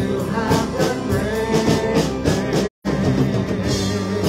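Live worship band playing: a woman singing lead with backing voices over drum kit, bass, keyboard and guitar, with a steady beat. The sound cuts out completely for a split second about three-quarters of the way through.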